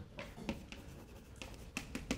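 Chalk tapping and scratching on a blackboard as a word is handwritten: a string of short, light taps and strokes.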